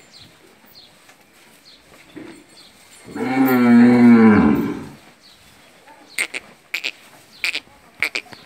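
A Gir cow moos once, a single long call of about two seconds that starts about three seconds in and drops in pitch as it ends.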